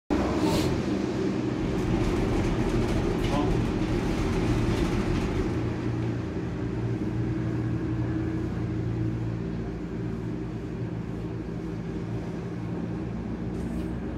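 Steady running hum and rumble of a moving cable car gondola, with several steady low tones from the cableway machinery; the sound is strongest at first and eases a little about six seconds in.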